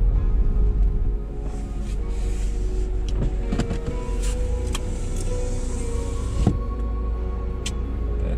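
Steady low rumble of a vehicle driving on a snow-packed road, heard from inside the cabin, with music playing over it.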